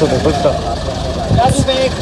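Men talking close by, over a steady low background rumble.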